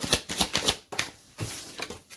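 Tarot deck handled and shuffled by hand: a quick run of card flicks and slaps through the first second, then a few more near the end.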